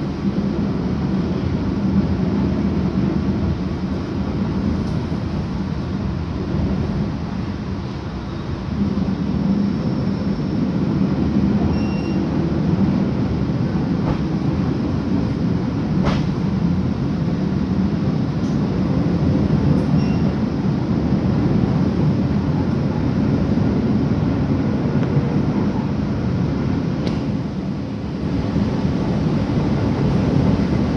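Steady low rumble of a moving passenger train heard from inside the coach, its wheels running on the rails, with a few sharp clicks in the second half.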